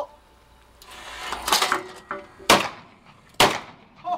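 Saiga 12 semi-automatic 12-gauge shotgun firing low-brass shells at clay targets: two sharp shots about a second apart in the second half, each with a short echo. A rougher, longer bang comes about a second before them.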